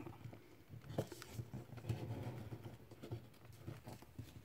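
Faint rustling and creasing of a square of paper being folded by hand, fingers pressing its corners in to the centre, with a few small taps and clicks.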